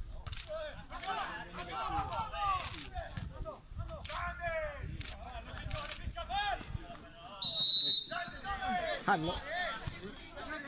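Shouting voices across a football pitch, then one short, loud blast of a referee's whistle a little past halfway.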